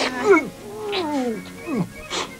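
A cartoon character's voice giving several whining cries that slide down in pitch, a long falling wail in the middle.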